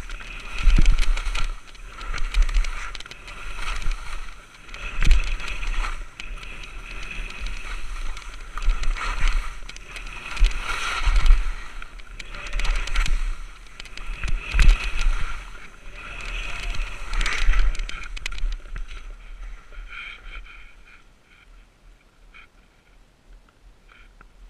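Skis scraping and swishing through snow in a run of linked turns, a surge of sound about every one and a half to two seconds. The sound dies away near the end as the skier comes to a stop.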